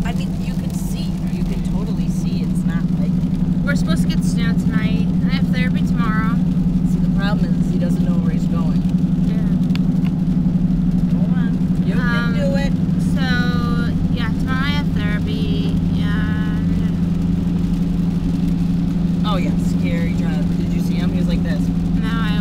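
Steady low drone of a Jeep's engine and tyres at highway speed on a wet road, heard from inside the cabin, with voices talking over it at times.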